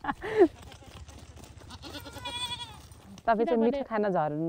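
A goat bleating once, a short high wavering cry a little past the middle, over a low steady hum.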